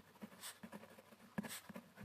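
A pen writing on paper: faint, uneven scratching of short pen strokes.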